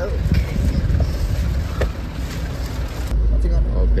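A vehicle engine's steady low rumble under broad outdoor noise. About three seconds in, the sound changes abruptly to a louder, deeper rumble of the minibus engine running.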